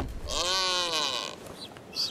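Male blue-footed booby giving one drawn-out whistling call during a sky-pointing courtship display. The call rises and then falls in pitch and lasts about a second.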